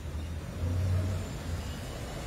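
Low rumble of a vehicle engine in the background, swelling about half a second in and easing off again.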